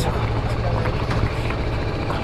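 BMW G310GS single-cylinder engine idling steadily, with the bike standing still.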